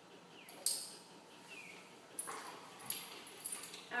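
A dog whining in a few short, falling whimpers, with brief rustling noises in between.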